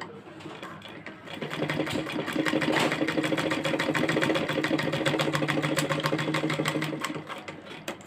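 Black domestic sewing machine stitching fabric: it picks up speed about a second in, runs with a steady hum and a rapid, even clatter of needle strokes, then slows and stops near the end.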